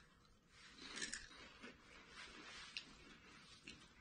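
Faint crunching and chewing of vinegar potato chips as three people eat them at once, with a few sharper crackles about a second in and again near three seconds.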